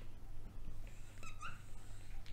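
Dry-erase marker writing on a whiteboard, the felt tip giving a few short, high squeaks about a second and a half in.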